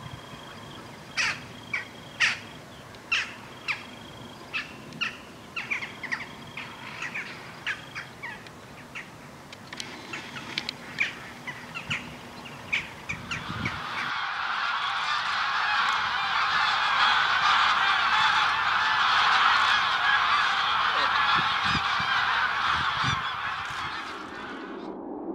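Birds calling: a run of short, sharp calls repeated every half second or so. About fourteen seconds in it gives way to a dense, continuous chatter of many birds calling together, as from a large flock, which swells and then eases near the end.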